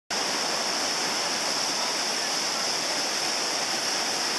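Steady rushing of whitewater in a river rapid.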